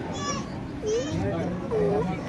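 Crowd of young children chattering in the open, a murmur of overlapping voices with a few short, high-pitched child voices standing out.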